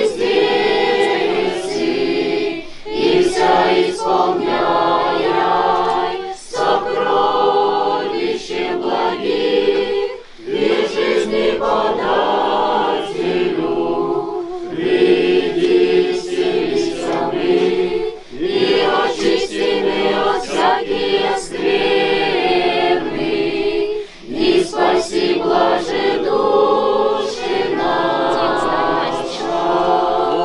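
Girls' and young women's choir singing Russian Orthodox liturgical chant a cappella, in continuous phrases with short breaths about ten and twenty-four seconds in.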